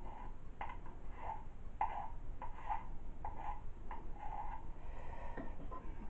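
Water poured off a jar of black manganese-oxide electrode slurry, running down a stirring stick into a glass beaker, gurgling in short glugs about twice a second.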